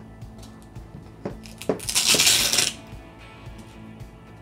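A foam pad being pulled off a plastic forearm-crutch cuff: a couple of small plastic clicks, then a brief peeling rasp about two seconds in, over soft background music.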